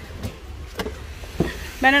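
Footsteps on the wooden planks of a rope bridge: a few faint knocks about half a second apart over a low rumble, then a woman starts speaking near the end.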